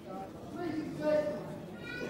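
Spectators shouting short, high-pitched calls of encouragement to the posing bodybuilders over a background of crowd noise, the loudest call about halfway through.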